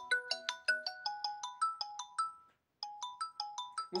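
Mobile phone ringtone from an incoming call: a quick marimba-like melody of struck, decaying notes, about five a second. It stops briefly about two and a half seconds in, then starts over as the call keeps ringing.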